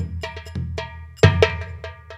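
Percussion accompaniment music: a quick, uneven run of sharp drum strikes with ringing tails over a low droning bass and held tones, with the loudest strike a little past the middle.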